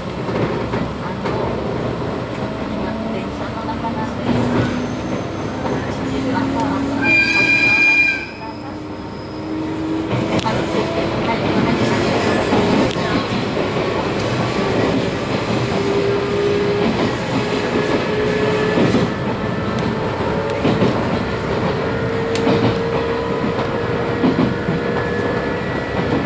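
Running noise of a JR 719 series electric multiple unit heard from inside the car, with a motor whine climbing slowly in pitch as the train gathers speed. A short high whistle-like tone sounds about seven seconds in, and the rumble grows louder from about ten seconds.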